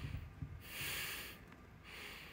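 A woman breathing through her nose close to the phone's microphone: slow, hissy breaths, the strongest about halfway through, with a few soft low bumps at the start.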